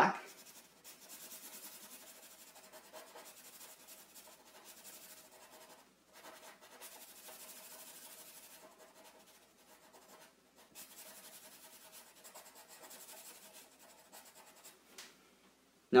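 Black felt-tip marker scrubbing back and forth on paper, colouring in an area solid. It is faint and steady, stopping briefly twice as the pen lifts.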